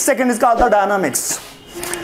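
A man's lecturing voice for about the first second, then a brief high rasping hiss and a short lull.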